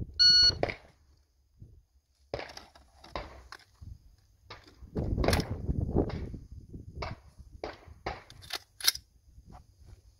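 Competition shot timer's start beep: one short, high, steady electronic tone right at the start. It is followed by clicks and knocks as the pistol-caliber carbine is picked up off the table and readied, and two sharp snaps near the end, the second nearly as loud as the beep.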